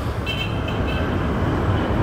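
Steady low vehicle rumble, with a faint high-pitched tone joining shortly after the start.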